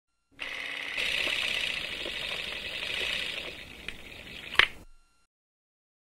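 Electronic intro sound effect: about four and a half seconds of hissing, static-like noise with a few faint clicks, ending in a sharp crack, the loudest moment, and then cutting off.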